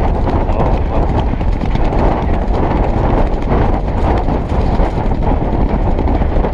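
Racehorses galloping on grass turf, heard close up from the rider's helmet camera: a fast, continuous run of hoofbeats.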